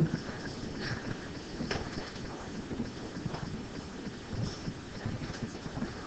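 Faint lecture-room background noise with rustling and a few light knocks or clicks.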